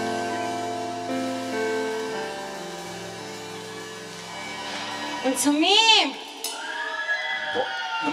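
A live band's closing chords, held keyboard and guitar notes, ringing out and fading away. About five seconds in, a voice over the PA gives one loud call that rises and falls in pitch.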